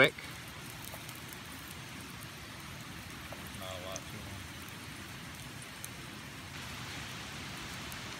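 Oyster mushroom pieces frying in butter in a small metal pan over a campfire: a steady sizzle with faint ticks and pops.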